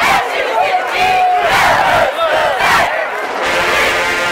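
A cheerleading squad shouting a cheer together over a large stadium crowd, with several long shouted calls that rise and fall in pitch.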